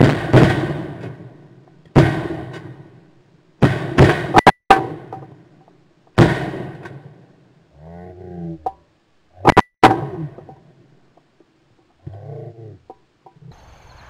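A string of about six 12-gauge shotgun shots fired at incoming pigeons, heard close up from a barrel-mounted camera. Each is a sharp blast with a ringing tail, spaced from a fraction of a second to a few seconds apart, with a quick pair about four seconds in.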